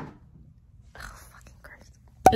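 A faint whispered voice close to the microphone, with a short click right at the start.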